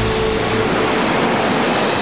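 Sea surf washing onto the shore with a steady rushing hiss, as the last held notes of background music fade out within the first second.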